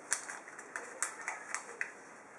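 Origami paper being folded and creased by hand against a wooden tabletop: a quick, irregular run of sharp, crisp crackles and taps, the loudest just after the start.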